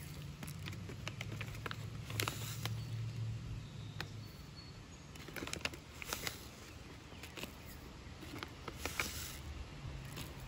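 Faint, scattered rustles and clicks of a plastic bag of chia seeds being handled and a measuring spoon scooping seeds. A low hum runs under it and fades about four seconds in.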